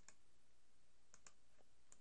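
Near silence with a few faint computer mouse clicks, two of them close together about a second in.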